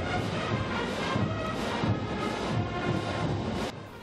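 A massed marching band playing loudly, with crash cymbals and bass drums among the many instruments; the sound drops away just before the end.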